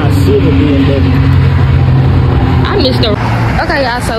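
A car engine idling with a steady low hum, with voices talking indistinctly over it. The hum drops away near the end.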